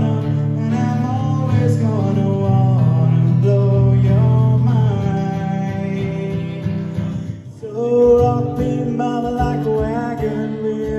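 A man singing with a strummed acoustic guitar. About three quarters of the way through, the music drops out briefly and another song starts on acoustic guitar and voice.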